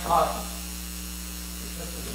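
Steady low mains hum on the sound system while a headset microphone that is malfunctioning is being fitted, with a brief muffled word at the very start.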